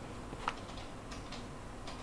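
A few faint ticks from a steel ruler and fingers handling a plastic sachet bag, the clearest about half a second in, over a steady low room hum.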